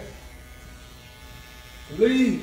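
Electric hair clippers buzzing steadily and faintly.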